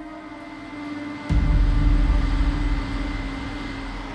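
Rosenbauer airport crash tender discharging water from its turret nozzles: a steady rush of water jets over the hum of the running pump and engine. About a second in, a much louder low rumble sets in suddenly and then slowly eases off.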